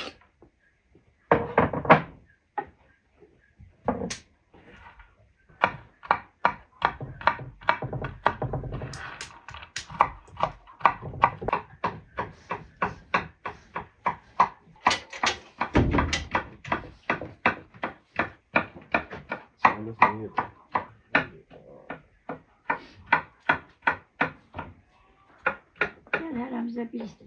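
A kitchen knife chopping food in a wooden bowl, in quick, regular strikes of about three to four a second.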